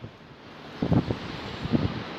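Wind blowing across the microphone: a steady hiss with two short, louder low rumbles of buffeting, about a second in and near the end.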